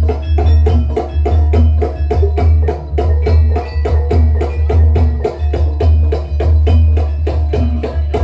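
Banyumasan ebeg accompaniment music: a Javanese percussion ensemble playing quick interlocking melodic strikes, about four to five a second, over a heavy, steady low bass pulse.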